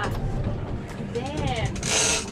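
Steady wind and engine noise on a small fishing boat, with a person's voice rising and falling in pitch once, about a second in, and a short rush of noise near the end.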